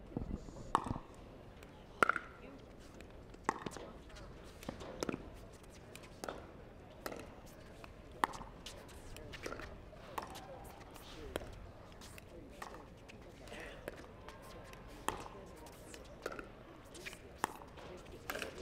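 Pickleball rally: paddles striking the plastic ball in sharp pops, about one a second, with two hits close together near the end.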